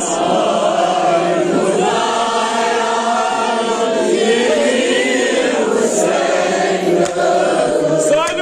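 A group of men chanting a nowha, a Muharram mourning lament, together in unison, with many voices overlapping on the refrain.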